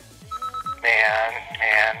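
A person's voice over a telephone line: a drawn-out vocal sound about a second in, running into a spoken word near the end, with a faint short steady tone before it.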